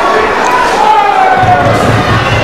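Fight crowd shouting and calling out to the fighters, several voices overlapping in long calls, with a few dull thuds near the end.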